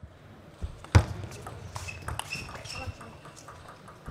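Table tennis rally: a table tennis ball clicking off paddles and the table in quick succession, with the loudest knock about a second in and a brief high squeak around the middle.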